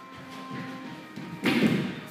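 Held notes of intro music fading away, then a loud thud lasting about half a second near the end.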